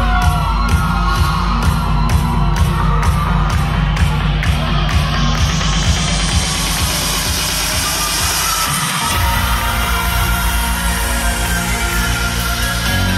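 A live band with electric guitar, drums, keyboards, saxophone and bass plays upbeat music with a steady beat. A rising sweep builds over several seconds, the bass drops out briefly about nine seconds in, and then the full band comes back in.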